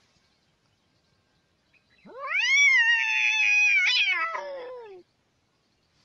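A domestic cat's single long, drawn-out meow, starting about two seconds in. It rises sharply in pitch, holds for about three seconds and slides down at the end.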